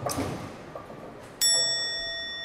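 Fading clatter of a bowling ball and lane, then about a second and a half in a single bell-like chime strikes and rings on steadily with several clear tones.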